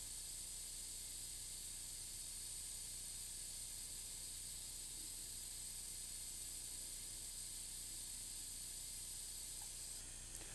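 Faint, steady hiss with a low hum underneath and no distinct events: room tone.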